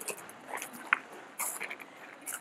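Footsteps crunching on a gravel path at a walking pace, about two steps a second, with a sharp click near the middle.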